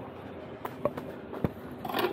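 A few light footsteps and knocks on concrete, spaced irregularly over a low background hiss.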